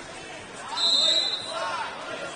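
A referee's whistle gives one short, steady, high blast about a second in, over voices in a gym.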